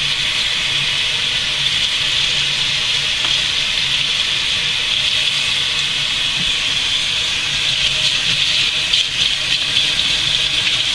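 Water from a kitchen faucet running steadily over hair and into a stainless steel sink as the hair is rinsed under it.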